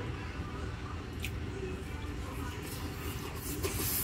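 A person chewing a mouthful of taro pie, with a brief click about a second in and several short mouth smacks near the end; the pie's crust has gone soft and no longer crisp. A steady low background rumble runs underneath.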